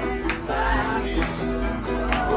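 Upright piano played live with a man singing, a few sharp hits cutting through the music.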